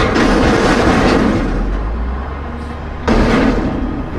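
Sound effects of an animated logo reveal: a sudden heavy hit at the start that rumbles on and slowly fades, then a second sudden hit about three seconds in.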